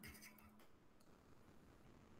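Near silence: faint room tone between sentences, with a faint tick about a second in.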